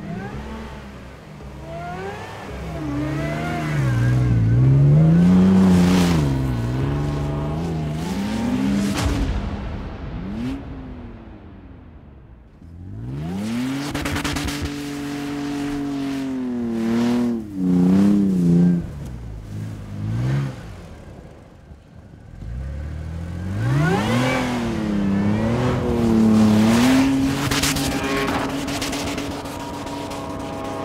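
Toyota Tacoma pickup's engine revving hard, its pitch climbing and falling again and again as the truck ploughs through deep snow with its wheels spinning. It comes in three long surges with brief drops in between.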